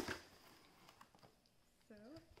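Cardboard box being picked up and handled: one sharp knock at the start, then faint handling noise.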